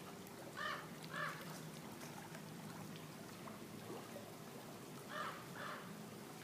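A bird calling in pairs of short, harsh calls: two about a second in and two more near the end. Under them runs a steady low hum.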